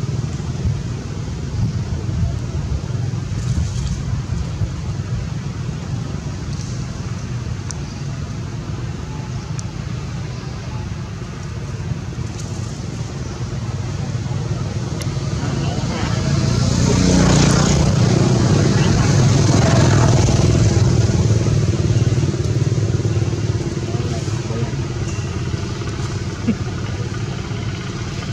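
Steady low rumble of motor traffic, with a motor vehicle passing close by that swells louder about sixteen seconds in and fades away again some six seconds later.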